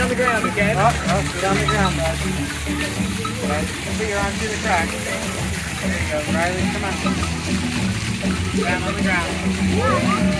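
Water spouts of an interactive fountain splashing onto rock, mixed with crowd and children's chatter. Low background music runs underneath.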